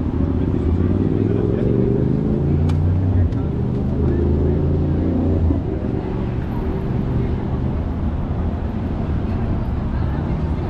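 Busy city street ambience: road traffic going by and passers-by talking, with a low steady hum through roughly the first half.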